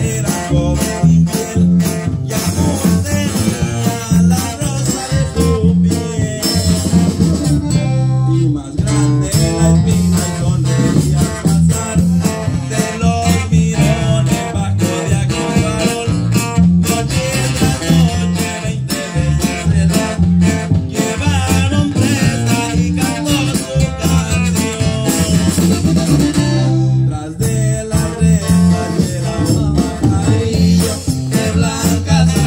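Live band music played through PA speakers: accordion, guitars, electric bass and drums, with a strong, steady bass line.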